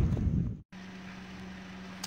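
Outdoor wind and background noise trailing off, then a sudden dropout to silence at an edit. After it, a faint steady low hum.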